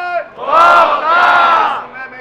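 A crowd shouting twice in unison, two loud calls of about half a second and three-quarters of a second, right after one another.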